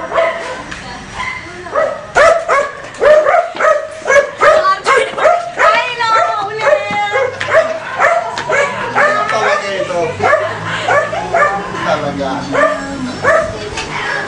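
A dog barking repeatedly in short, quick barks, several a second, getting louder about two seconds in and going on throughout.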